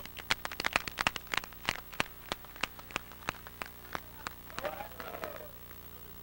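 Sparse, scattered handclaps from a small group, several claps a second, thinning out after about four seconds. A brief voice follows near the end.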